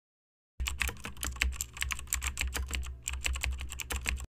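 Computer keyboard typing sound effect: rapid key clicks over a low steady hum, starting about half a second in, with a short break around three seconds.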